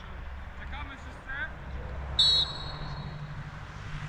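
Referee's whistle blown once, a short, high, steady blast a little after two seconds in, over faint distant shouts from the pitch.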